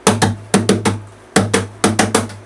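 Acoustic guitar strummed in short, choppy strokes in groups of three or four, with a low bass note ringing under them. It is a repeating reggae riff, the bridge of his song.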